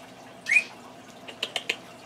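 Timneh African grey parrot giving a short rising chirp about half a second in, then a quick run of three or four sharp clicks.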